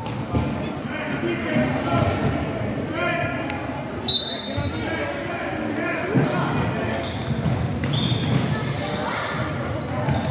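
A basketball being dribbled on a hardwood gym floor amid players' sneakers squeaking during a youth game, with chatter from players and spectators all through, in a large echoing gym.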